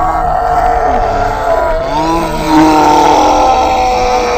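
People groaning in long, drawn-out vocal tones that waver and glide in pitch, sometimes two voices at once, over a low rumble.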